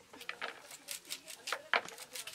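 Leafy greens being sliced with a curved sickle blade: a run of short, crisp cutting snaps, a few each second.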